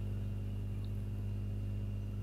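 Steady low electrical hum with a faint high thin tone above it; no pouring or splashing is heard.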